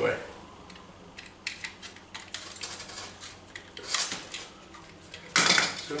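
Small clicks and scrapes as cardboard packing is cut and pulled off a metal lamp arm, with a loud clatter about five seconds in, fitting a red-handled utility knife being put down on a tiled floor.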